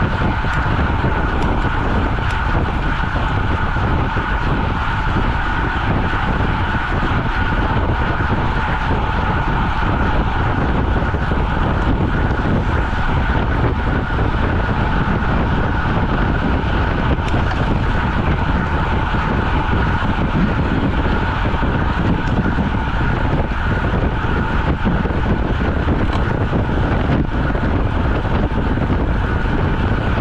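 Steady rush of wind over a bike-mounted camera microphone on a road bike travelling at over 30 mph, with a steady whine running underneath.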